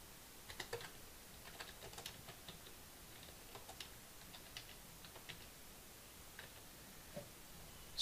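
Faint typing on a computer keyboard: quick, irregular runs of keystrokes.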